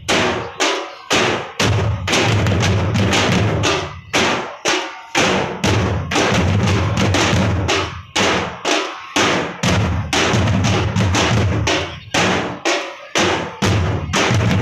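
A troupe of drummers beating waist-slung drums with sticks in unison. Loud rolling passages are broken every few seconds by a handful of separate, sharp strokes.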